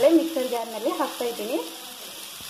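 Steady sizzling hiss of onions, tomatoes and spices frying in a pan. A person's voice sounds over it for the first second and a half, then stops, leaving the sizzle alone.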